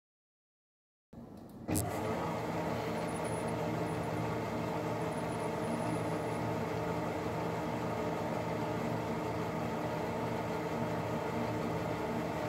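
Instron universal testing machine running a tensile pull on a metallic fiber: a sharp click as the test starts, then a steady mechanical hum from the drive as the crosshead pulls.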